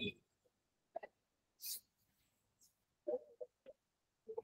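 A short spoken syllable at the start, then near quiet broken by a few faint vocal sounds: a brief hiss like a breath and a few murmured syllables near the end.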